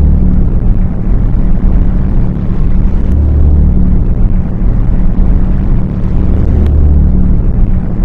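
Loud, deep cinematic rumble sound effect, a steady low drone that swells and eases every few seconds.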